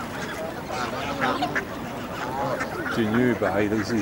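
Canada geese calling and honking in short, rising and falling cries, several birds at once.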